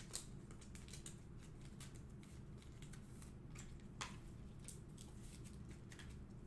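Faint handling of trading cards and their packaging: scattered small clicks and light rustles, with a slightly sharper click about four seconds in.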